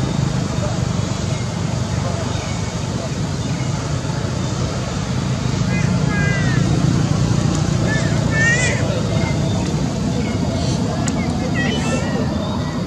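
Steady low rumbling outdoor background noise, with a few short high-pitched chirps in small clusters about six, eight and a half and eleven and a half seconds in.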